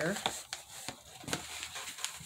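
Scissors snipping the ties that hold a doll in its packaging: a few separate sharp snips.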